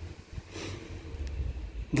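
Steady low background rumble with a soft, brief sound about half a second in; a woman's voice begins right at the end.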